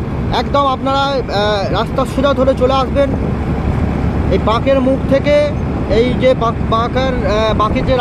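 A man talking, with a steady low rumble of wind and road noise from a moving vehicle underneath his voice.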